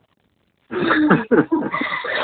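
A person's voice: after a moment of silence, a loud run of wordless vocal sounds with sliding pitch starts about two-thirds of a second in.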